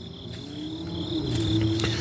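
Crickets chirping steadily on a high, even note. A low hum grows louder through the second half.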